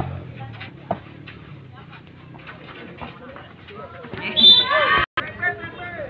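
A volleyball being struck, with two sharp hits in the first second, over a low murmur of spectators' voices. A loud shout rises from the crowd about four seconds in as the rally ends.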